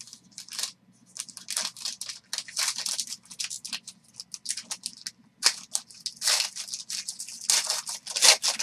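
Foil wrapper of a Panini Origins football card pack crinkling and tearing as it is pulled open by hand: a dense run of crackles, loudest in the second half.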